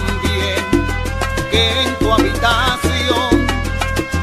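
Salsa baúl music from a DJ mix, with held bass notes under steady percussion and melody lines.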